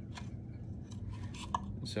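A thin wire cable tether and a plastic wheel center cap being handled, giving a few faint clicks and light scrapes as the cable is worked through the cap's drilled holes, over a low steady hum.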